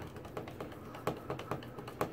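Hand screwdriver turning a screw into an outlet cover plate: a run of small, irregular clicks and ticks.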